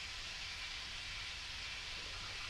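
Steady recording hiss with a faint low rumble underneath, unchanging throughout: the background noise of the recording, with no speech.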